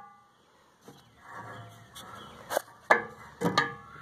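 Handling noise of fishing tackle: a few sharp clicks and knocks in the second half, after a quiet first second.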